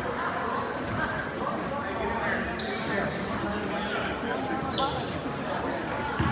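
A basketball bouncing on a hardwood gym floor as a player dribbles at the free-throw line, over steady crowd chatter.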